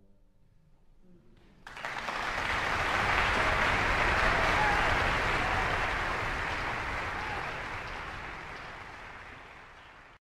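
Audience applause in a concert hall. It breaks out suddenly about two seconds in, after a short hush, and slowly dies down toward the end.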